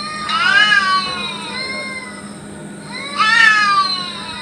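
Cat yowling during a fight: two long, drawn-out calls, each rising and then sliding down in pitch. One begins just after the start and the other about three seconds in.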